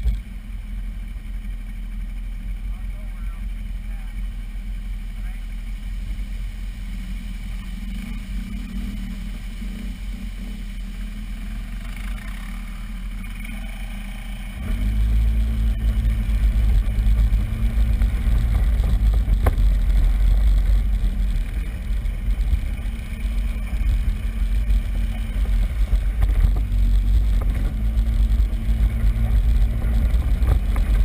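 ATV engine idling steadily, then about halfway through it picks up and runs louder under load as the quad drives off along a muddy trail.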